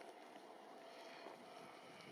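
Near silence: a faint, steady outdoor background noise with no distinct event.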